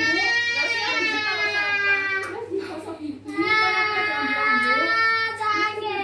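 A baby crying in two long, high wails with a short break between them, with fainter adult voices underneath.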